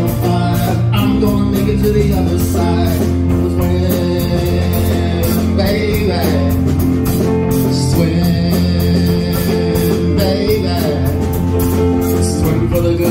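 Live rock band playing: electric guitar, bass and a drum kit keeping a steady beat with regular cymbal hits, and a male voice singing in places.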